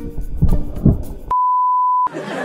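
Music with two thumps, then, a bit over a second in, a steady 1 kHz test-tone beep of the kind played with TV colour bars, which starts and cuts off suddenly.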